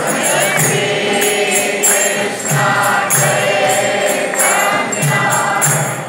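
Congregational kirtan: a group of voices chanting a devotional melody together, with hand cymbals (kartals) jingling and a drum beating roughly once a second.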